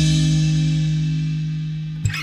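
Band music: a held chord and a cymbal ringing out together after the drums stop, fading slowly.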